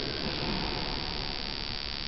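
Steady hiss and low room noise in a large, echoing church during a pause between a voice's phrases.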